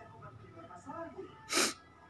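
A child's faint voice, then a short, sharp breathy burst about a second and a half in.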